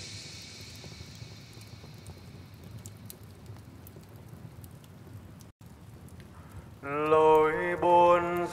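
A faint, steady crackling hiss fills the gap between two lofi tracks. About seven seconds in, the next track's music starts suddenly.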